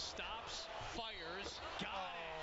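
Basketball TV broadcast audio playing quietly: a play-by-play commentator talking over steady arena crowd noise.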